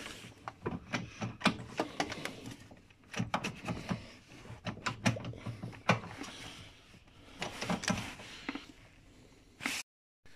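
Irregular metallic clinks, knocks and scrapes of a 16 mm spanner being worked free by hand from a cramped spot in an engine bay.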